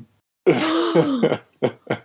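A person's breathy vocal exclamation with sliding pitch, about half a second in, followed by three short vocal bursts.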